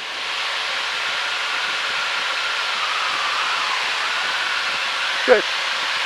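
Steady rushing hiss of cockpit noise in an L-39 Albatros jet trainer in flight, from airflow and its AI-25TL turbofan engine. A faint whine wavers, dipping and rising in pitch around the middle.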